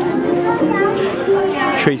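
Voices throughout, with a speaker starting to talk near the end.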